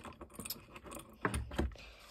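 Light clicks and knocks of a die-cast Stanley MaxSteel multi-angle vice being handled, its head worked on the ball joint, with louder knocks a little past a second in.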